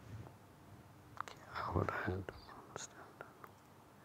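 A short stretch of soft, muttered speech, under the breath, about a second and a half in, with a few faint clicks of a computer mouse.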